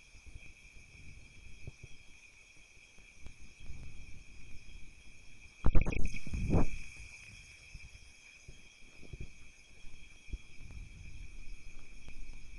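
Background noise of a desk microphone: a steady high-pitched electrical whine over a faint low rumble. About six seconds in comes a brief loud pair of dull low thuds, like a bump against the microphone or desk.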